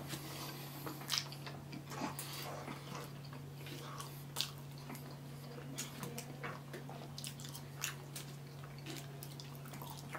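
Close-miked chewing of a burger and fries: irregular wet mouth clicks and smacks, over a steady low hum.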